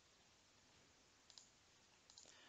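Near silence: faint room tone, with a quick faint double click of a computer mouse a little past halfway.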